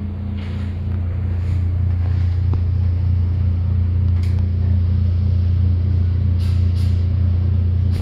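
A loud, steady, deep droning hum holding one low tone, swelling slightly over the first couple of seconds.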